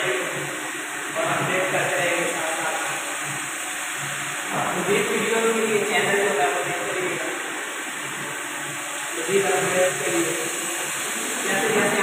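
A man's voice speaking in short phrases with pauses, over a steady high hiss.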